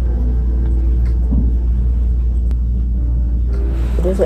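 A steady low rumble with a faint hum above it, and no speech.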